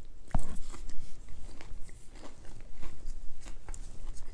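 A person chewing food: a run of small, irregular crunchy clicks, with one sharper crack about a third of a second in.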